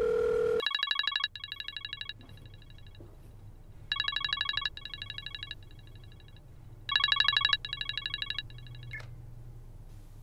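A telephone rings on an outgoing call: a short beep, then three trilling electronic rings about three seconds apart, each loud at first and then softer, before the call is answered.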